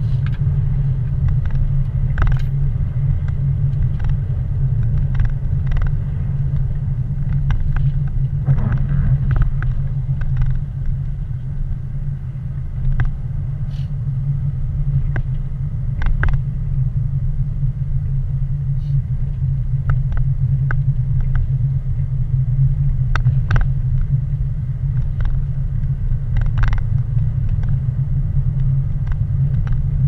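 Car driving, heard from inside the cabin: a steady low rumble of engine and road noise, with occasional faint clicks and knocks at irregular times.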